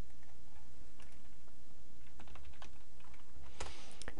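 Computer keyboard typing: a run of light key clicks as a web address is typed, over a steady low hum, with a brief hiss near the end.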